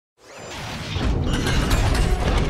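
Intro sound effects swelling up from silence over the first second into a loud, dense rumble with rapid mechanical ratcheting clicks.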